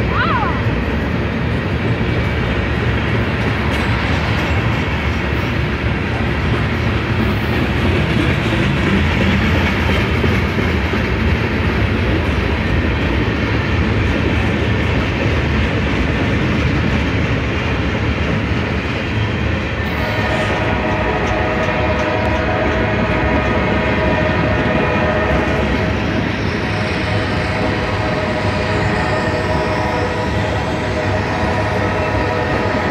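Freight cars of a Norfolk Southern mixed freight train rolling past close by, a loud steady rumble of wheels on rail. About two-thirds of the way through, a steady high whine of several pitches joins over the rumble.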